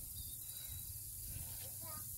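Quiet outdoor background: a low, uneven rumble of wind on the microphone under a steady faint hiss.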